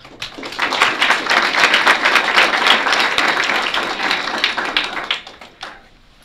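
Audience applauding, building right away and dying away about five seconds in.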